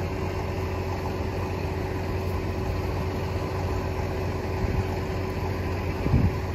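An engine idling steadily, an even hum that does not change.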